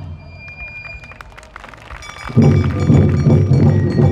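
Awa odori festival music. A brief lull holds a few light clicks and a short high held note, then the drums and the rest of the band come back in loud about two and a half seconds in.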